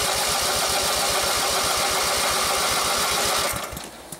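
Small Briggs & Stratton engine running steadily with an inline spark tester on its plug lead, its firing an even rapid pulse. About three and a half seconds in it is shut off, the pulses slowing as it coasts to a stop.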